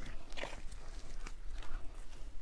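Footsteps walking over a building site: a few scattered steps and scuffs over a low, steady rumble.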